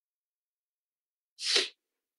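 A single short, sharp burst of noise about one and a half seconds in, with otherwise near silence.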